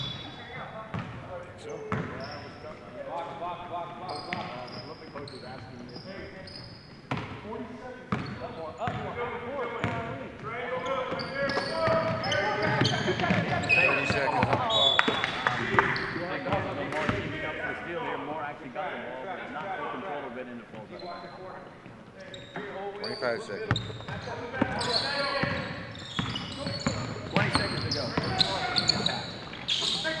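Indoor basketball game: a ball bouncing on a hardwood gym floor, with scattered sharp thuds and brief high squeaks, under players' and spectators' voices.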